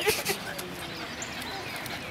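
Dogs playing together: a short vocal burst right at the start, then a run of faint high chirps that fall in pitch, a few a second.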